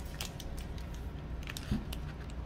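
Clear plastic blister packaging being handled, giving scattered light clicks and crackles, with a soft bump near the end.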